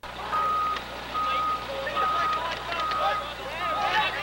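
A repeating electronic beep: one steady tone, about 0.4 s long, sounding a little more than once a second, with voices talking underneath.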